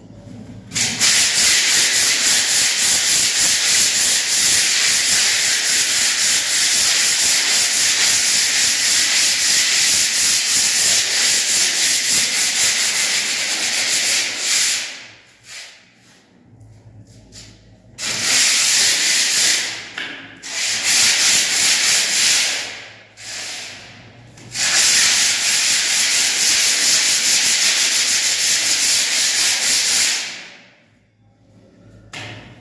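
Hand sanding of a cement-rendered wall: quick back-and-forth rasping strokes of an abrasive block on the rough plaster, smoothing out its imperfections. The rubbing stops for a few seconds around the middle, breaks off briefly twice, then carries on.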